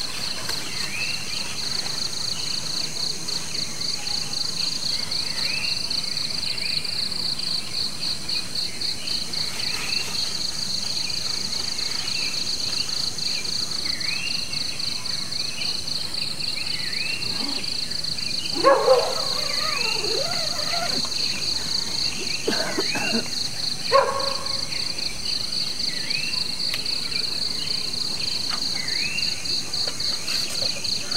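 Tropical forest evening chorus: insects trill steadily in a fast, high pulsing drone, under short rising-and-falling chirps that repeat every second or two. Near the middle come a few brief, louder sounds, like a knock or a voice.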